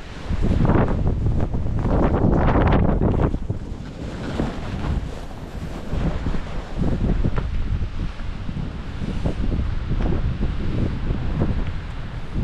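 Wind buffeting the microphone during a fast ski descent, with skis hissing and scraping through soft, cut-up snow. It is loudest for the first three seconds or so, then rises and falls in surges through a series of turns.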